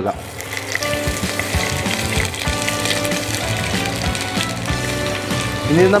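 Sliced onions sizzling in hot oil in a pan as they are dropped in: a steady frying hiss with small crackles.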